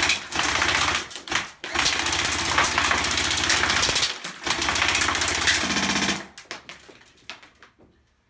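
Airsoft rifle firing full-auto in three long bursts, broken by short pauses about a second and a half in and about four seconds in, and stopping about six seconds in. A few scattered clicks follow near the end.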